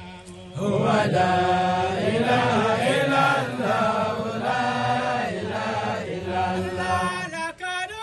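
A voice chanting in long, wavering held notes, starting about half a second in and carrying on loudly, with a brief dip near the end.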